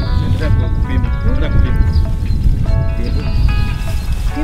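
Background music with long held chords, with a few short, arching voice-like calls over it.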